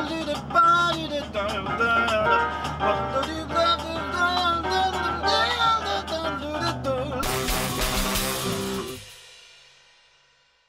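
Jazz-rock band music from a French jazz quintet: melodic lines with electric guitar over a held bass note and drums. About seven seconds in it lands on a loud final chord with a cymbal crash, which cuts off near nine seconds and rings away briefly.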